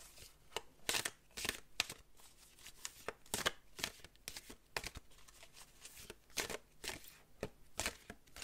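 Queen of the Moon oracle cards being shuffled overhand by hand: faint, irregular slaps and rustles of the cards, about two a second.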